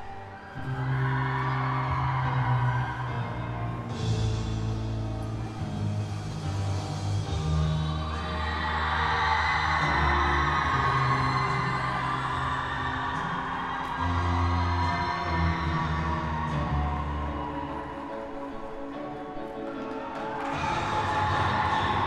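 Program music for a synchronized skating team's free skate, played over the arena's loudspeakers, with a sustained bass line that changes note every second or two.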